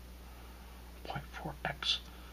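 A man muttering or whispering a few words under his breath, starting about a second in and ending with a short hiss. A steady low electrical hum runs underneath.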